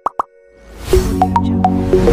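Logo intro sting: two quick pops, then a rising swell with deep bass and a few short, bright plucked notes over a held chord.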